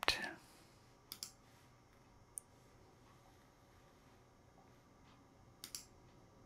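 Faint computer mouse clicks while menus are opened in the software: a quick double click about a second in, a single sharp click a little later, and another double click near the end.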